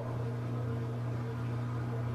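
Steady low hum with a faint hiss beneath it, unchanging throughout; no handling clicks stand out.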